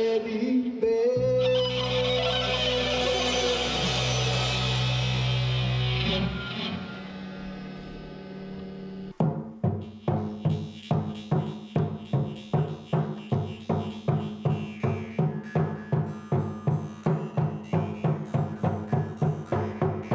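A rock band of electric guitar, bass guitar and drum kit ends a song on a held chord that fades away. About nine seconds in it cuts to a tall standing drum beaten with two beaters in a steady beat of about two and a half strokes a second, over a steady low tone.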